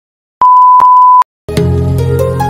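A single steady, high electronic beep tone lasting just under a second, then music begins near the end.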